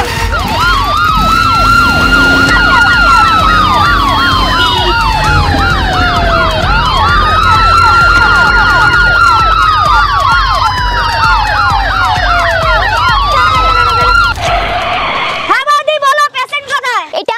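Ambulance siren wailing: a tone that rises quickly and slides slowly back down, repeating about every six seconds, with a fast yelping warble layered over it and a low rumble underneath. The siren cuts off near the end.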